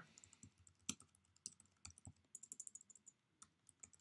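Faint computer keyboard keystrokes: a few scattered taps, a quick run of typing in the middle, then a few more taps.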